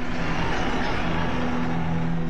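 Noisy engine rumble of Soviet tanks in an archive recording, under a steady low music drone.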